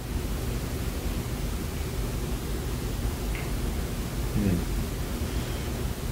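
Steady room noise: an even hiss with a low hum underneath. About four and a half seconds in there is a brief, low vocal sound from one of the men.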